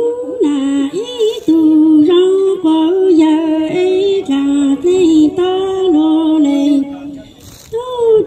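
A woman singing solo and unaccompanied through a microphone and PA, holding long notes that step between a few pitches, with a short pause for breath near the end.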